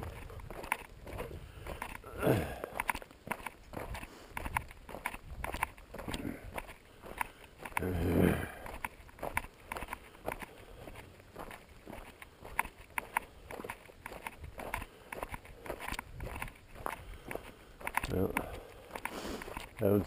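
Footsteps crunching on a gravel road at a steady walking pace. A short voice sound breaks in about two seconds in and a louder one about eight seconds in.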